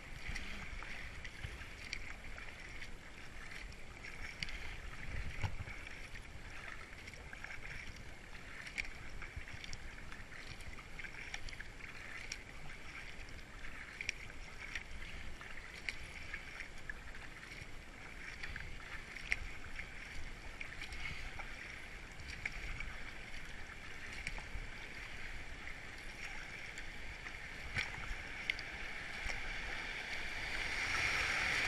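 Kayak paddle blades dipping and splashing with each stroke over a steady rush of river water along the hull, heard through a helmet-mounted camera. The rush of water grows louder near the end as a rapid comes up ahead.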